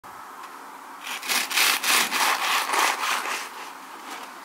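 Serrated bread knife sawing back and forth through a baked coffee bun and its coffee-cookie topping, about three strokes a second. It starts about a second in and fades near the end.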